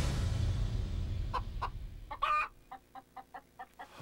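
A chicken clucking: two short clucks, a louder drawn-out call, then a quick run of soft clucks. A low music bed fades out at the start.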